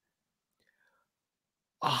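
Near silence, a pause in a man's talk, then he starts speaking again near the end.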